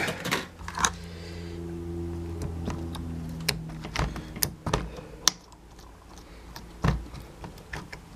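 Slime being kneaded and squished by hand in a glass dish, giving irregular sharp clicks and pops. A low steady hum runs through the first half and stops about four and a half seconds in.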